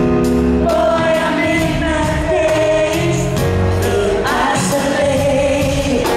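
Female pop vocal group singing live in harmony over a backing band, with a steady drum beat about twice a second, heard from the arena audience.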